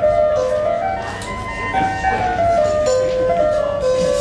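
Electronic keyboard playing a slow melody of held notes, each about half a second long, stepping up and down.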